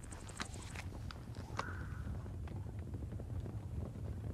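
Faint scattered clicks and taps over a low steady rumble, the quiet sound effects of a film soundtrack before the singing begins.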